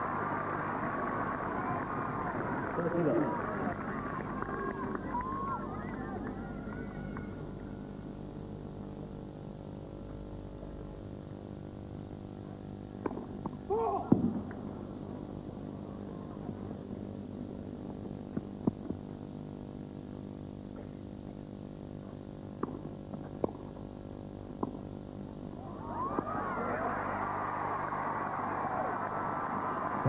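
Tennis crowd noise: many voices at first, then settling to a quiet hum while sharp ball strikes sound every second or two during a rally. Near the end the crowd swells again in cheering and applause.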